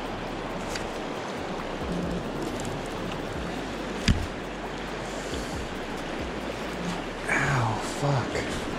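Steady rush of flowing river water, with one sharp knock about four seconds in: the handle of a fishing reel spinning backwards as a hooked fish runs, rapping the angler's knuckles.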